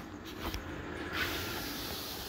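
A few faint clicks, then from about a second in a steady breathy hiss: a person blowing air out through a wide-open mouth.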